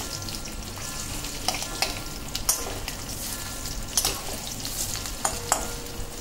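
Besan-battered boiled eggs deep-frying in hot mustard oil in a kadai: a steady sizzle broken by sharp pops and crackles every second or so.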